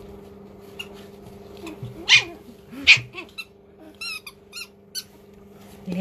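A golden retriever puppy chewing a squeaky rubber duck toy: two loud, sharp squeaks about two and three seconds in, then a quick run of short, higher squeaks. A steady low hum runs underneath.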